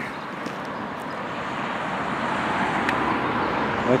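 Road traffic noise: a steady rushing that slowly swells louder over the first three seconds or so, as a vehicle approaches.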